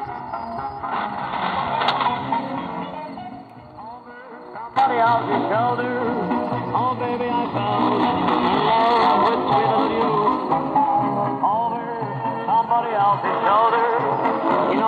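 Music played through the speaker of a Tecsun PL-680 portable radio tuned to a shortwave AM station on 5140 kHz, with the narrow, muffled sound of AM reception. The signal sinks for about a second near the middle and then comes back suddenly.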